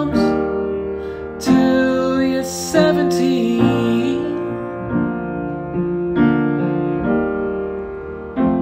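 Upright piano playing slow sustained chords, a new chord struck about every second, in a gentle ballad. A man sings over it from about a second and a half to three and a half seconds in.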